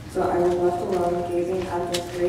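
A group of voices reciting together in unison, a steady, chant-like flow of speech that resumes after a brief pause at the start.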